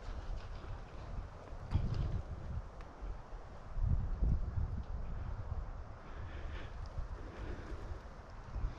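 Wind buffeting the microphone of a head-mounted GoPro: a low rumble that swells in gusts, strongest about two and four seconds in.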